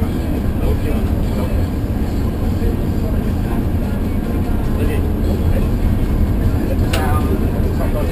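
Steady low rumble of a public bus's engine and road noise heard inside the passenger cabin while the bus drives along, with faint passenger voices in the background.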